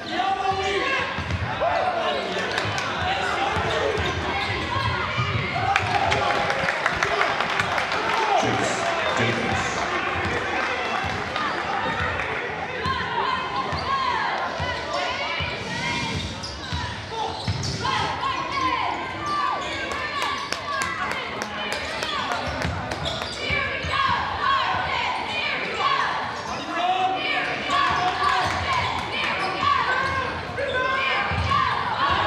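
A basketball being dribbled on a hardwood gym floor, with repeated bounces under indistinct shouting and talk from players and spectators. The sound carries the echo of a large gym.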